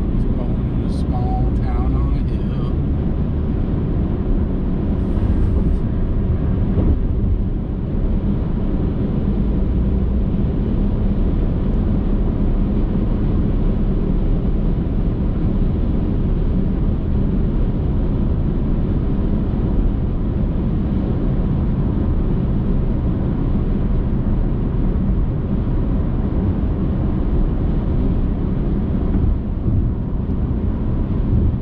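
Car driving at highway speed: a steady, even low rumble of tyres on the road and the engine.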